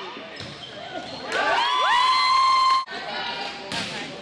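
Volleyball rally: sharp smacks of the ball being hit, about a second in and again near the end. In the middle, loud drawn-out shouts rise and then hold before cutting off suddenly.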